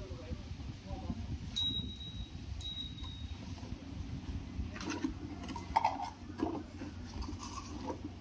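A bell-like ring sounds twice, about a second apart, over a low steady rumble. Then come a few sharp knocks and clicks as a clear plastic jar and a metal snake hook are handled on paving stones.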